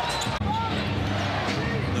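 Game sound in a basketball arena during play: a steady crowd hum with a basketball being dribbled on the hardwood court, broken by a brief dropout a little under half a second in.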